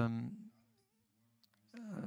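A man's speech into a microphone: a drawn-out "eh" hesitation trails off, a pause of about a second with almost nothing audible follows, and talk resumes near the end.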